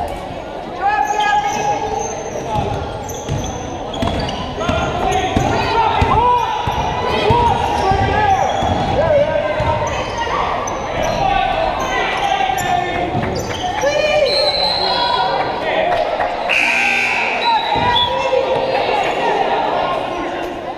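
Basketball game in a gym: a basketball bouncing on the hardwood court, with voices of players, coaches and spectators calling out throughout, echoing in the hall.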